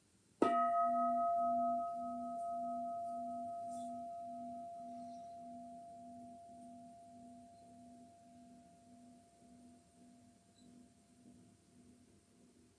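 Bowl-shaped mindfulness bell struck once with a wooden striker about half a second in, then left to ring and slowly fade. The higher overtones die away within a few seconds, while the main tone rings on over a low, slowly throbbing hum.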